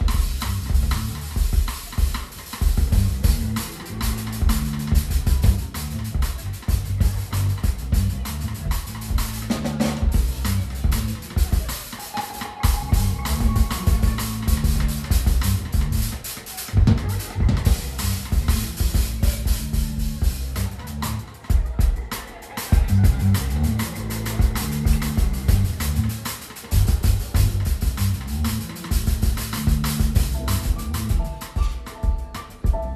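Live band's rhythm section playing: a drum kit with bass drum and snare under a low bass line, stopping briefly a few times, with only a few short higher notes from the other instruments.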